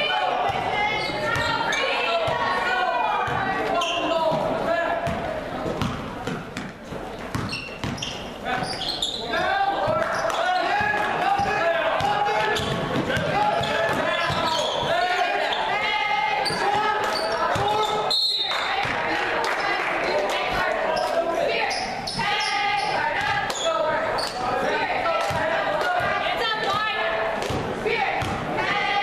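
Basketball dribbled on a hardwood gym floor during play, echoing in the hall, among spectators' and players' voices. The sound drops out briefly about two-thirds of the way through.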